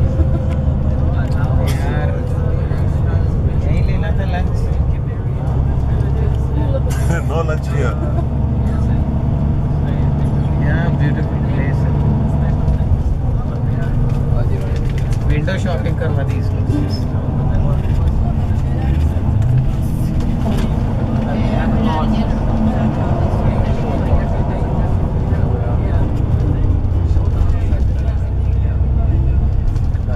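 Steady low engine and road rumble heard from inside a moving bus, with indistinct passenger voices over it.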